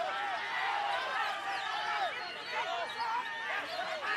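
Many caged songbirds whistling at once, with people's voices calling and shouting over them: a dense run of short, arching whistled notes with no break.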